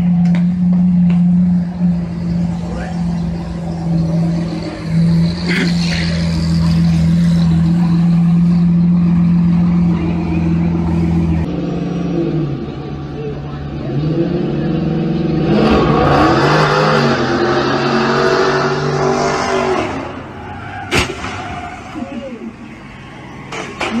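A car engine held on a steady, loud note for the first half. Then engines revving up and down with tyres squealing, and a single sharp crack near the end.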